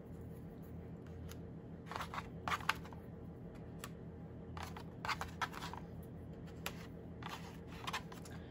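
Small cut-out paper pieces being picked up and set down on a cardboard board, heard as a handful of faint, brief rustles and taps over a steady low hum.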